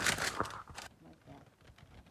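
Crinkling and rustling of baking parchment with small clicks as baked cookies are handled on it, for about the first second; after that it is much quieter.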